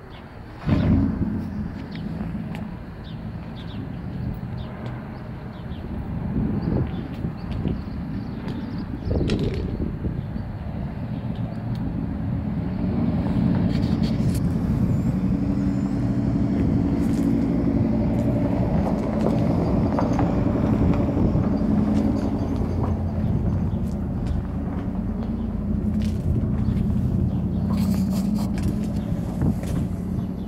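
A low, steady engine-like rumble that grows louder about halfway through, with a sharp knock about a second in.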